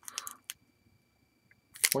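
Foil trading-card pack wrapper crinkling in the hands: a few short rustles and a click in the first half-second, then quiet, then the wrapper crinkling again near the end.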